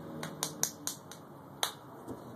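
A run of about six sharp clicks or snaps at uneven spacing over a second and a half. The last one, near the end, is the loudest.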